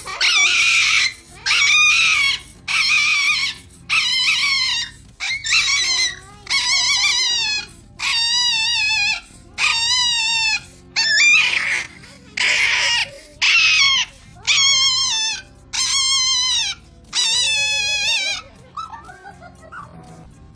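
A small Chihuahua-type dog screaming in about fifteen long, high-pitched, wavering cries, each about a second long with short breaths between. These are fear and distress cries while it is held in a cone for an injection. The cries stop about a second and a half before the end.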